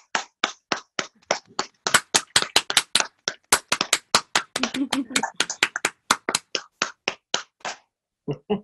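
Hands clapping in applause: a steady clap about four times a second, joined about two seconds in by more clappers so the claps overlap and sound brighter, thinning out again near the end.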